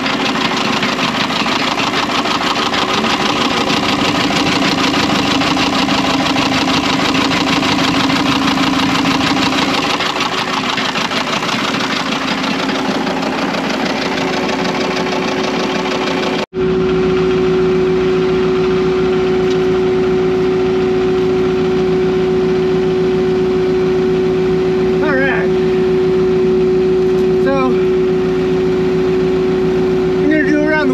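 Engine of a snow-covered tracked compact loader with a snowblower attachment running steadily. About halfway through, the sound drops out for an instant and returns as a steadier engine hum with a strong constant tone, with a few short high chirps near the end.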